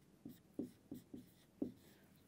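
Marker pen writing on a whiteboard: about five short, faint strokes as the letters are drawn.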